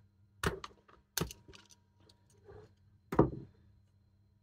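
Small screwdriver prying a U-shaped metal retaining pin out of the back of a cordless Dremel rotary tool's plastic housing: three sharp clicks, about half a second in, just after a second in and about three seconds in, with a faint scrape between.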